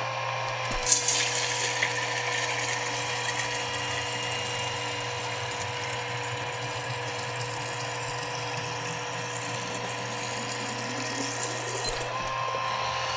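Chugger magnetic-drive centrifugal brewing pump running with a steady whine. Its pitch dips slightly about a second in as water starts flowing under load. Water jets and splashes into a glass gallon jug throughout, and the pump's pitch rises again right at the end.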